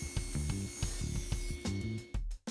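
Background music with a steady beat over a table saw running through a cut of a thin strip of softwood; the saw noise stops abruptly near the end.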